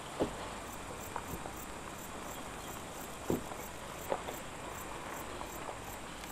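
Insects chirping faintly in a steady, quick repeating pattern over a steady background hiss, broken by a few sharp clicks, the loudest near the start and about three seconds in.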